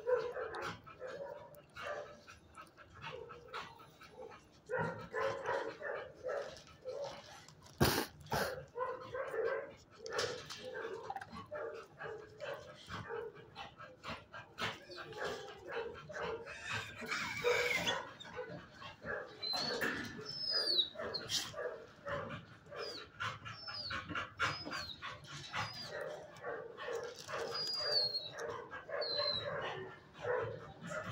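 Shelter dogs barking in their kennels, a steady run of several barks a second. There is one sharp bang about eight seconds in, and short high squeaks in the second half.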